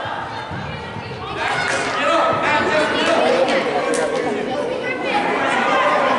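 Indistinct chatter and calls of many voices, players and spectators at an indoor youth soccer game, echoing in a large hall; it grows louder about a second and a half in.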